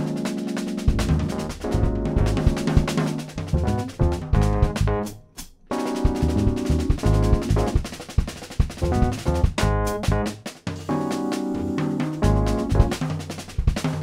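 Jazz trio of Rhodes-style electric piano, electric bass and drum kit playing bebop, with a short break about five seconds in before the band comes back in.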